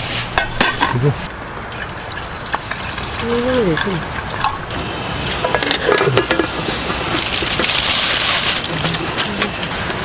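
Water being poured and a small metal pot with its lid handled on a camp gas stove, with a few light clinks near the start, then a steady hiss that grows louder for a couple of seconds before dying down near the end.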